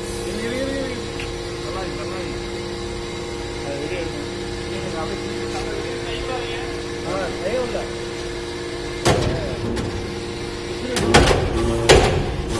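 Metal-chip briquette press running with a steady hum that holds two constant tones. About nine seconds in there is a sharp knock, and near the end loud, irregular metallic clatter as the press cycles.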